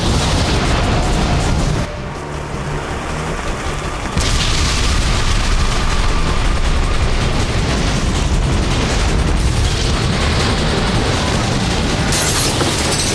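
Sound effects of a volcanic eruption: a continuous loud rumble of booms. It dips about two seconds in and surges back loud about two seconds later.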